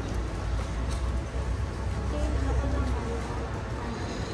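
Indistinct voices of people nearby over a steady low rumble.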